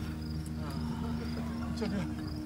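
Crickets chirping in a steady, repeating pattern over a low, steady hum.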